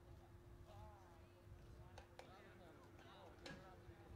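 Near silence with faint background voices of people talking, a few light clicks and a low steady hum underneath.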